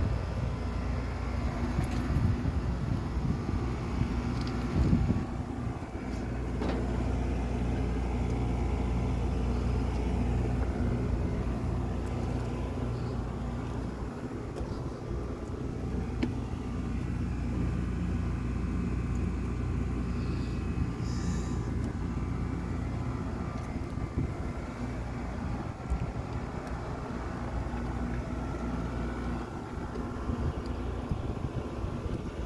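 Steady mechanical hum of rooftop air-conditioning condensing units running, their fans and compressors giving a constant low drone with several steady tones, broken by a few light knocks.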